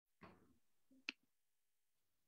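Near silence with a brief soft rustle near the start and one sharp click about a second in.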